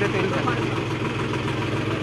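Mahindra tractor's diesel engine idling steadily.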